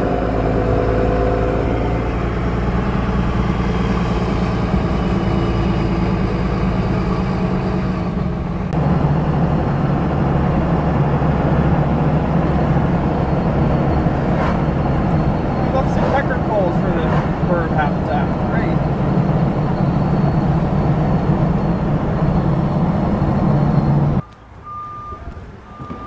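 Engine and road noise inside a truck's cab while driving: a steady low rumble that gets louder about a third of the way in and stops abruptly near the end.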